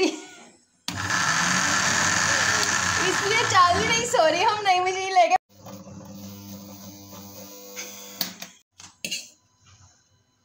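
A Blackford juicer-blender's motor runs loudly on a jar packed with minced meat, a load it was not made for, and cuts off abruptly after about four and a half seconds. A quieter steady hum follows, then a few clicks near the end.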